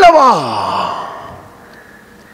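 A man's voice trailing off in a long, drawn-out sound that falls steadily in pitch over about a second, like a sigh, then fades into faint room tone.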